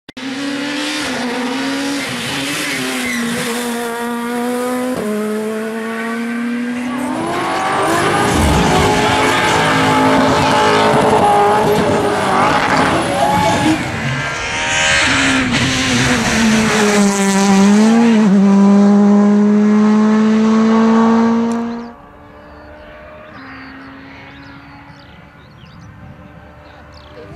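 Rally car engines at high revs as the cars go hard through the stage, the pitch holding and then stepping or gliding with the gear changes and the throttle, with rough tyre and road noise in the middle stretch. Near the end the sound drops suddenly to a fainter engine further off.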